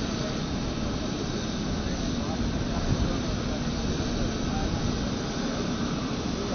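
Steady jet aircraft noise on an airport apron, with voices talking underneath.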